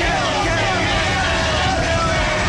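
A person's voice over steady road-traffic noise.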